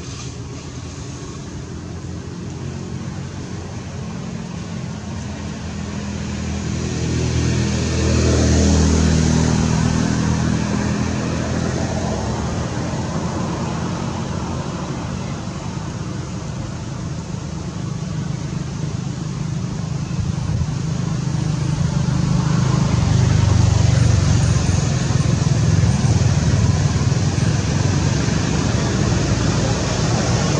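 A motor vehicle's engine running close by, growing louder as it passes about eight seconds in and again for several seconds from about twenty seconds on.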